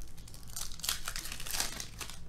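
Foil trading-card pack wrappers crinkling and rustling as the cards are handled, a quick run of crackly rustles that is thickest over the second half.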